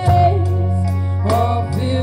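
A woman singing into a microphone over an instrumental accompaniment with a steady bass line. A held note ends right at the start, and she comes in with a new phrase a little past halfway.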